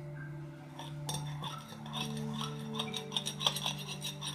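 Metal spoon clinking and scraping against a ceramic bowl as fruit is stirred, a quick run of light clinks starting about a second in.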